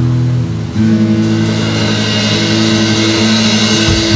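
Live rock band playing, heard close to the drum kit: held chords ring over a steady cymbal wash, with a chord change about a second in.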